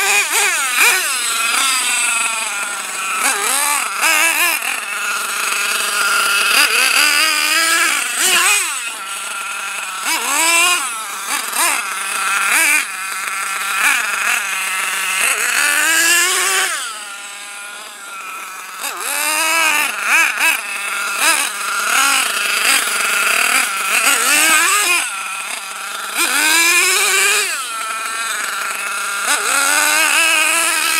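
Small glow-fuel nitro engine of an RC monster truck running at high revs, its high-pitched buzz rising and falling over and over as the throttle is opened and closed while driving.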